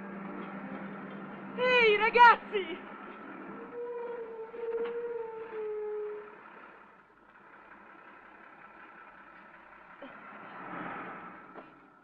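A voice shouting: two short, loud calls about two seconds in, then one long drawn-out call that sinks slightly in pitch. A faint steady hum lies underneath.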